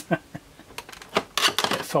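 The hinged plastic case of an IOtech Analyzer 488 bus analyser being folded up by hand: a series of light plastic clicks and knocks as the keyboard section swings up against the body.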